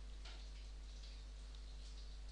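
Faint computer mouse clicks over a steady low hum and background hiss.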